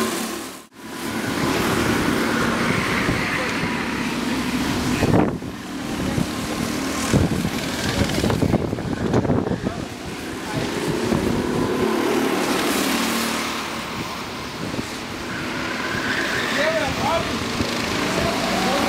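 Go-kart engines running as karts drive around the track, mixed with people's voices. The sound drops out briefly just under a second in.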